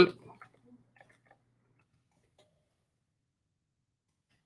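A few faint computer-keyboard key clicks in the first second or so, then silence.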